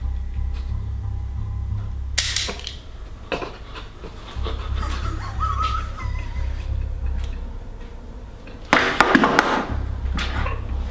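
Low pulsing drone of a tense film score, with a person's sharp breaths: one about two seconds in and a louder burst of heavy breathing near the end.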